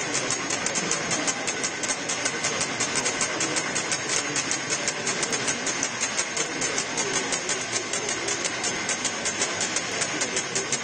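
Murmur of a large crowd in a packed, echoing church, with a steady fast ticking running through it, about three ticks a second.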